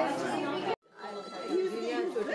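Indistinct chatter of several people talking in a room, broken just under a second in by a brief gap of silence where the recording cuts, then more talk.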